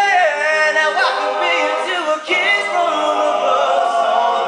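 Men's a cappella octet singing: a solo voice at the microphone moves in gliding phrases over held harmonies from the backing singers.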